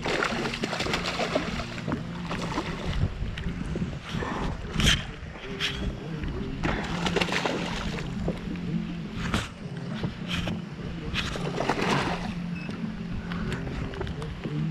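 A hooked fish thrashing at the surface beside a small boat, in several bursts of splashing with a few sharper slaps. A steady low hum from the boat's electric trolling motor runs underneath.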